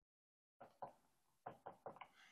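Whiteboard marker tapping against a whiteboard while writing: a few faint, short clicks in the second second, otherwise near silence.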